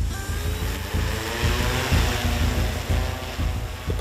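Large eight-rotor agricultural spray drone running its propellers: a loud, steady rushing whir with a faint motor whine, starting suddenly, with background music underneath.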